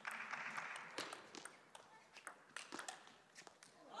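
Faint crowd applause in an arena, fading after about a second into a few scattered sharp clicks.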